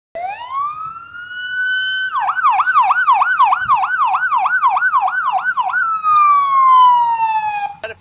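Electronic vehicle siren on a red ambulance-style truck: a rising wail for about two seconds, then a fast yelp sweeping up and down about three to four times a second, then one long falling tone that stops just before the end.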